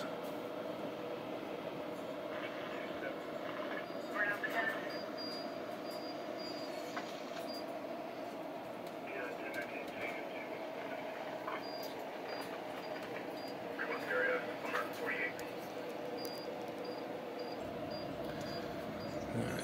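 A steady background hum, with a few brief, faint handling noises of wires and cables being worked inside an opened transceiver chassis.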